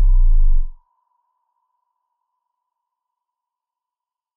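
Synthesized logo-sting sound effect: a deep boom falling in pitch that dies out under a second in, leaving a thin high ringing tone that fades slowly away.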